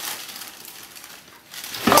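Soft rustling of handled fabric, then a sudden loud knock near the end as something is dropped.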